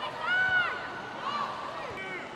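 Football stadium crowd ambience with high-pitched shouts over it: one long shout in the first second, then two shorter ones.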